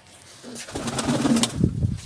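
Domestic pigeons cooing in a flock, building from about half a second in, with rustling and a few sharp clicks among them.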